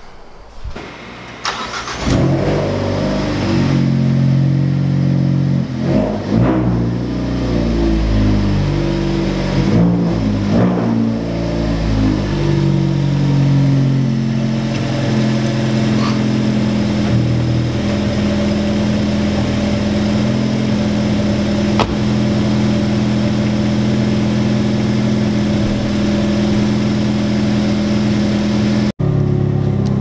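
Ford Focus ST's 2.0-litre turbocharged four-cylinder engine starting about two seconds in, its revs shifting up and down at first, then running steadily at idle. A few sharp clicks come over it.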